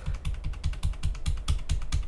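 Rapid run of computer keyboard clicks, about ten a second, with dull thumps beneath them: repeated key presses undoing drawn strokes in an image editor.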